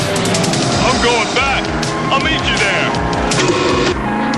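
Cartoon soundtrack music playing steadily, with short warbling sound effects over it about one and two seconds in.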